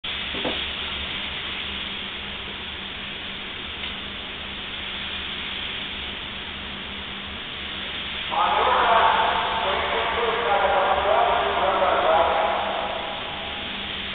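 Steady recording hiss with a low electrical hum; from about eight seconds in, indistinct voices murmur in the background for several seconds.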